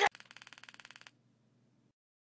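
Toy ray gun zap: a rapid buzzing rattle of about twenty pulses a second over a low hum, lasting about a second, then trailing off faintly and stopping.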